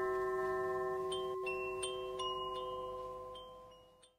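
Chimes ringing: several bell-like tones held and overlapping, with a few light strikes, fading steadily away until the sound stops just at the end.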